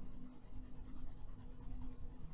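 Caran d'Ache colourless blender pencil rubbed back and forth over a layer of wax-based coloured pencil on paper, a faint, irregular scratching of strokes. The blender is working the pigment into the paper to fill the white gaps.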